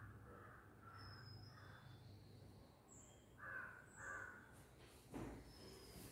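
Near silence: room tone with faint calls, two short ones about three and a half and four seconds in.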